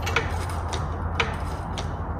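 Floor jack being pumped by its long handle to lift a weight-distribution hitch spring bar, a sharp click at each stroke, about four clicks roughly half a second apart, over a steady low hum.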